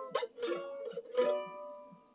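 F-style mandolin strummed three times on a chord fretted up the neck, the last strum ringing out and fading away.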